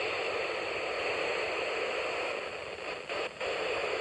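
Steady FM receiver static from a Yaesu FT-817ND radio tuned to the SO-50 satellite downlink, with no station coming through. The hiss dips briefly a little after three seconds.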